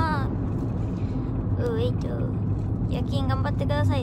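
Steady low rumble inside a car's cabin, the noise of the engine and road, with a young woman's voice breaking in briefly a few times.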